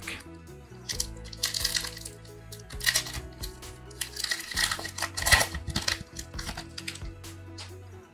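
A trading-card pack's foil wrapper crinkling and tearing open in several short crackling bursts, over steady soft background music.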